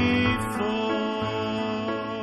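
A man singing one long held note over keyboard accompaniment, the music slowly getting quieter.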